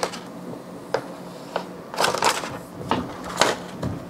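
Paper release liner of a 3M adhesive-backed build sheet crackling and rustling as it is peeled off and handled, in a run of short, irregular crinkles.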